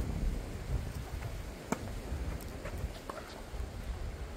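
Strong wind buffeting the microphone as a steady low rumble, with a few sharp taps of a tennis ball on the hard court and on racket strings during a serve and the start of the rally. The loudest tap comes a little under two seconds in.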